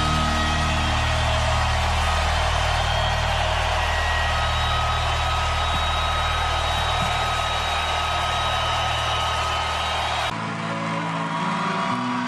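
Rock music: a dense, sustained wall of sound over steady low notes, held without a break, cut off about ten seconds in as the next track of the compilation begins.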